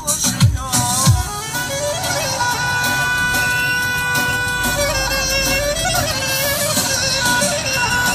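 Music: a few deep drum hits in the first second or so, then a melody of long, held, slightly wavering notes over a dense backing.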